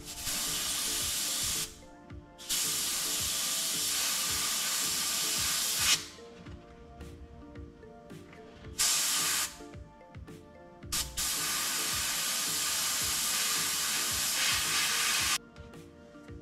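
Airbrush spraying paint in four bursts of hiss, each starting and stopping sharply: a short one at the start, a longer one of about three seconds, a brief one, and a last of about four seconds.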